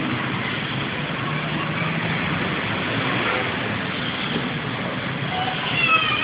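Steady traffic noise: an even hiss with a low engine hum underneath.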